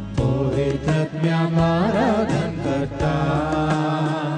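A woman singing a devotional hymn through a microphone, with a wavering vibrato on the long notes, over instrumental accompaniment with sustained low notes and a steady beat.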